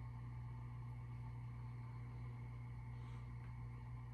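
Quiet room tone: a steady low hum under faint background noise, with nothing else happening.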